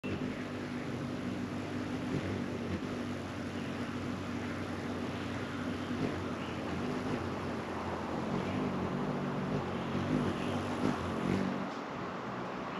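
Wings of several hummingbirds humming as they hover and dart around a feeder, the low hum swelling and fading as birds come and go. Faint birdsong behind.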